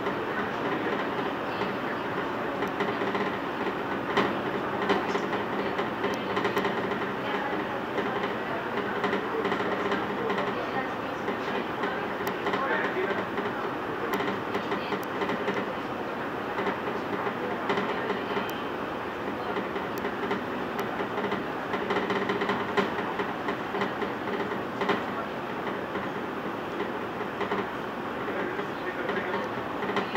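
Madrid Cercanías electric commuter train running at speed, heard from inside the carriage: a steady rumble of wheels on rail with scattered faint clicks.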